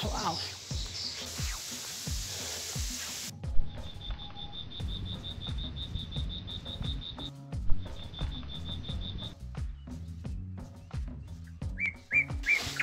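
Footsteps walking on a stony dirt road, the steps coming evenly. A rush of noise is heard at first and cuts off abruptly about three seconds in. From about four to nine seconds a small animal gives a high, rapid, evenly pulsed trill of several pulses a second.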